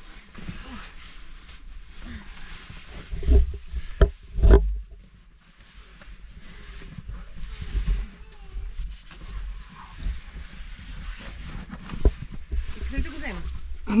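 Close handling and rubbing noise of clothing and gear against rock and a handheld camera as people squeeze through a narrow rock crevice, with a cluster of heavy low thumps about four seconds in and another near the end, and faint voices.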